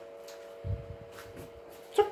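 A single low thud a little over half a second in, followed by a few faint clicks, over a faint steady hum.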